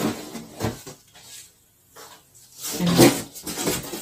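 Cardboard boxes knocking and scraping as a boxed pan is lifted out of a large shipping carton, with a sharp knock at the start and a louder stretch of scraping and rustling about three seconds in.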